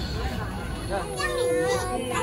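Voices of young children and people talking over a busy background noise. A child's high-pitched voice comes in about a second in.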